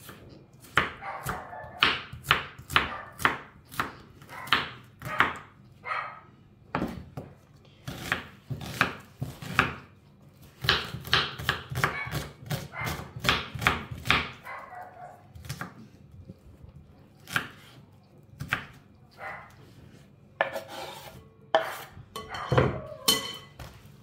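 Kitchen knife chopping an onion on a wooden cutting board: runs of sharp knocks, two to three a second, broken by short pauses, with the strokes sparser near the end.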